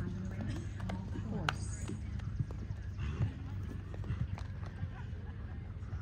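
A horse's hooves striking the sand footing of a show arena in an irregular run of soft thuds and clicks as it moves across the ring, with voices in the background.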